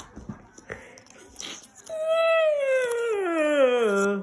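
A long wailing call about two seconds in, gliding steadily down in pitch over about two seconds, with a few faint clicks before it.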